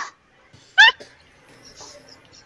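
A person's single brief, high-pitched squeak of stifled laughter with a rising, wavering pitch, about a second in, between otherwise quiet moments.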